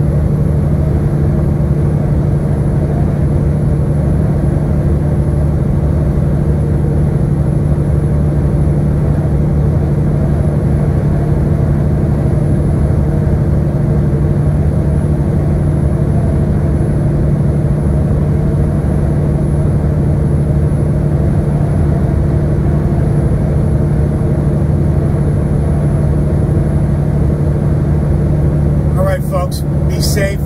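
Inside the cab of a Peterbilt 579 semi truck at highway cruise: a steady low engine drone with road noise. A voice starts right at the end.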